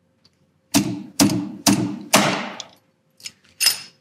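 Paintless dent repair slide hammer: its sliding weight slammed against the stop four times about half a second apart, jerking on a glue tab stuck to a dent in a car's body panel. Two lighter knocks follow near the end.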